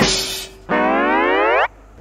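Comic editing sound effects: a short airy puff, then a cartoon-style tone that slides upward in pitch for about a second and cuts off abruptly.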